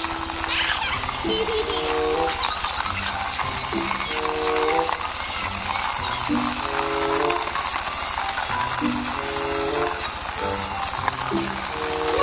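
Background music: a repeating phrase of short stepped notes, about every two and a half seconds, over a steady hiss.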